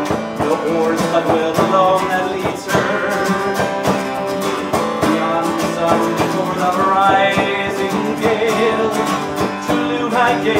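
Live folk music: an acoustic guitar strummed over a hand-held frame drum keeping a steady beat.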